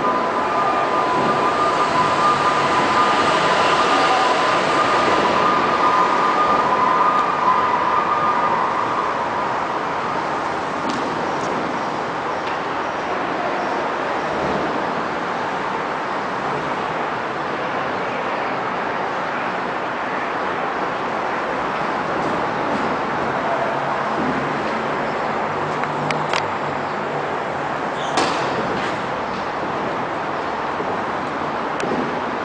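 Steady rushing background noise of a covered tennis hall, with a faint steady hum in the first several seconds and a few sharp knocks near the end.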